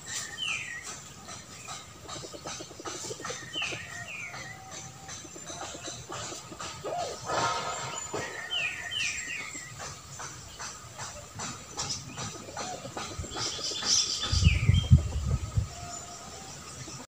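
Short falling bird chirps, often in pairs, coming back every few seconds over a scatter of small clicks and rustles. A low rumble rises near the end.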